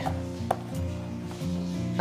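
Background music with steady sustained notes, and one sharp click about half a second in as the screw cap of a plastic wide-mouth water bottle is closed.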